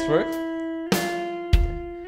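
Clean electric guitar playing single picked notes of a slow warm-up finger exercise in quarter notes, a new note about once a second, each ringing on, over a slow drum-machine beat at 50 BPM.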